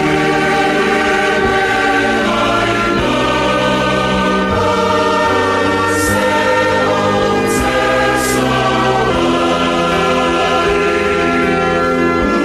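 Choir singing a hymn in slow, long-held chords that change every second or two.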